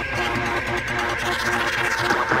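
Electronic dance music from a vinyl DJ mix of breakbeat and bass music: a repeating pitched synth pattern over a steady bass line.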